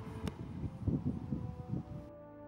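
Wind buffeting the microphone, an uneven low rumble that rises and falls, with a single sharp click about a quarter second in.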